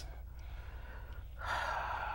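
A pause in conversation with a faint low room hum; about one and a half seconds in, a man draws a soft, audible breath in.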